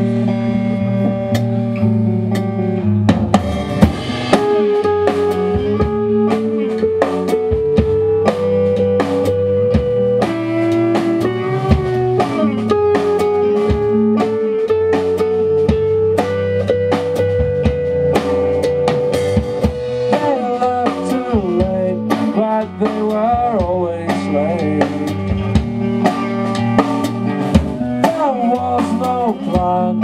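Live rock band playing an instrumental opening on electric guitars and drum kit. A held chord rings for the first three seconds, then the drums come in under a guitar line of long sustained notes that step up and down in pitch.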